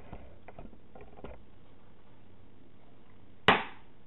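A few faint gulping clicks as water is swallowed from a mug, then a single sharp knock about three and a half seconds in that dies away quickly.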